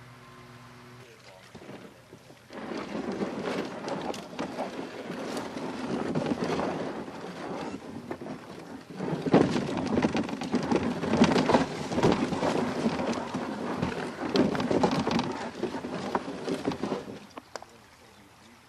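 Canoe hull scraping over gravel and stones as it is dragged by the bow into the creek, with footsteps crunching on the rocks. The rough, irregular scraping starts a couple of seconds in and stops just before the end, once the canoe floats.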